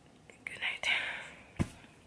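A short breathy whisper from a woman, with no clear pitch, about half a second in. Then a single sharp tap near the end.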